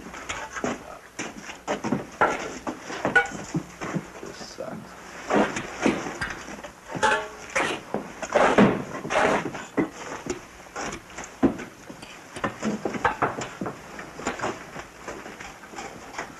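Indistinct voices with scattered knocks and clatter.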